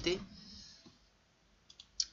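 Computer mouse clicking two or three times near the end, quick and sharp, stepping the date forward in an astrology program. Before that it is nearly quiet.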